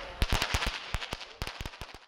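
Firecrackers going off on the street pavement: a rapid, uneven string of sharp cracks, about a dozen, the loudest near the start.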